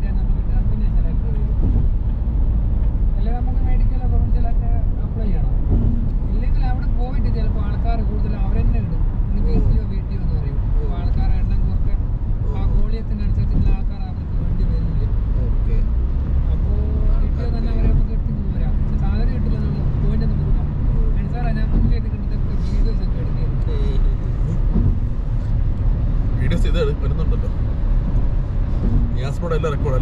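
Steady low road and tyre rumble inside a moving car's cabin at highway speed.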